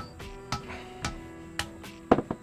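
A hammer cracking nuts on a block: about five short, sharp knocks, with soft background music underneath.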